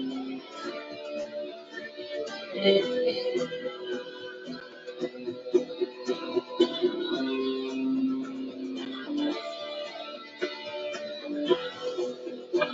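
Solo guitar playing a melody, with picked notes and several long held notes.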